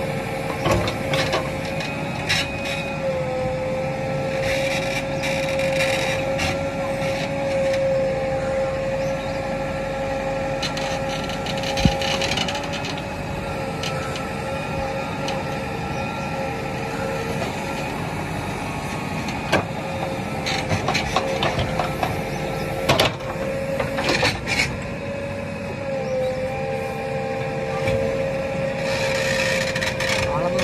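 JCB 3DX backhoe loader running steadily with a high, constant whine, its bucket digging and scraping into sandy soil with occasional sharp knocks, the loudest about twelve seconds in and several more in the second half.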